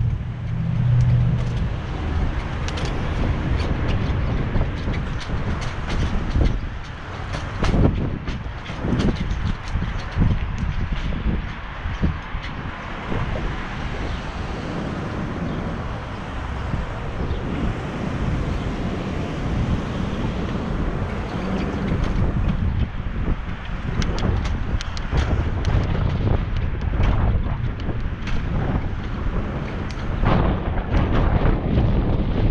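Wind rushing over an action camera's microphone on a moving bicycle, with street traffic and frequent short knocks and rattles from the ride.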